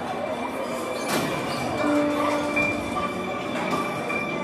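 Murmur and rustling of a seated audience in a large, echoing school auditorium. A few held musical notes come in about two seconds in.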